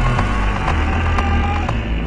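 Dark electronic music: deep sustained bass notes under a thin, held high tone that shifts pitch a couple of times, with light clicking percussion.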